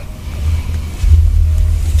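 A steady low rumble with no speech over it, growing louder about a second in.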